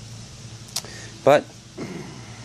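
Steady low rumble from a wood-fired rocket heater burning, with a single sharp click shortly before a spoken word.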